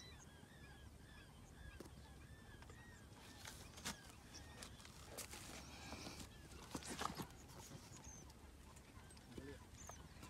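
Faint, repeated bird calls, short arched honk-like notes about three a second, fading away after the first couple of seconds. A few brief knocks and rustles follow around the middle, the loudest near the end of that stretch.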